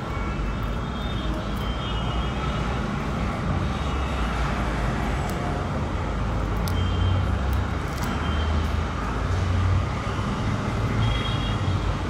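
Steady low background rumble with an even hiss, swelling slightly about seven to ten seconds in, with a few faint clicks over it.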